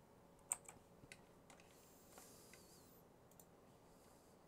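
A few faint, sharp clicks from working a computer's mouse and keys, the first the loudest, between about half a second and a second and a half in. A soft hiss follows for about half a second, over near-silent room tone.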